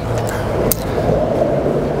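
Surfskate's urethane wheels rolling on smooth concrete with a steady, loud rumble as the rider carves, with one sharp click under a second in.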